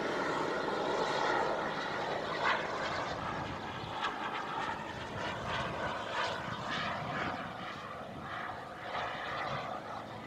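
Model jet's small turbine engine (iJet Black Mamba 140) running in flight, a steady jet rush that slowly fades as the jet draws away.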